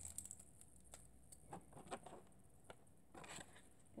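Near silence with a few faint rustles and light clicks of a plastic-wrapped package being handled.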